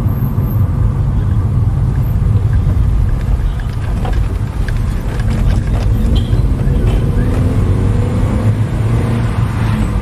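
Steady low rumble of a car's engine and tyres on the road, heard from inside the cabin while driving. The engine note rises faintly about two-thirds of the way through.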